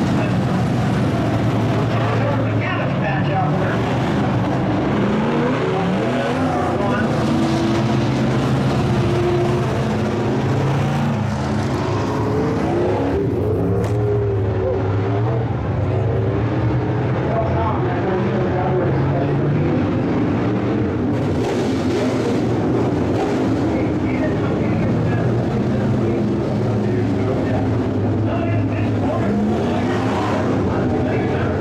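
IMCA Modified dirt-track race cars' V8 engines running around the oval in a continuous, steady low drone.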